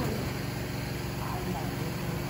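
A steady low machine hum with a few fixed tones, like an engine or motor running at a constant speed, and a faint voice in the background about a second in.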